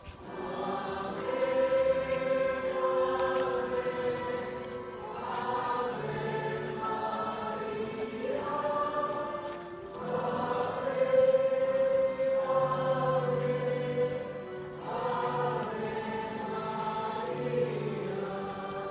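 A choir singing a slow hymn, in long held phrases of about five seconds each with a low sustained note beneath.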